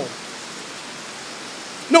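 Steady, even hiss of background noise with nothing else standing out, filling a pause between spoken sentences.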